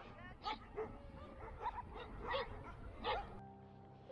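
A dog barking outdoors, about five or six short barks spread over three seconds. Near the end a held musical tone comes in.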